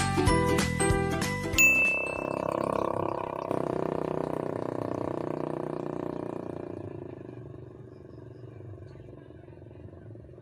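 Channel-intro jingle: a quick tune of chiming, bell-like notes that ends with a short high ping about a second and a half in, followed by a long swell that fades out over several seconds. Faint steady outdoor background noise is left after it.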